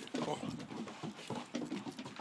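Greater Swiss Mountain Dog puppy's paws pattering and knocking on wooden deck boards as it runs, with a person's voice over it.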